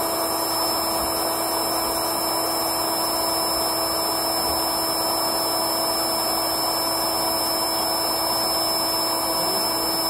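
The built-in electric pump of an air mattress running steadily, inflating the mattress: an even rush of air over a constant motor hum.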